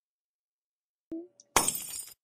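Glass-shattering sound effect: a sudden crash about a second and a half in, after a second of silence and a brief short tone, marking the lights going out in a children's story.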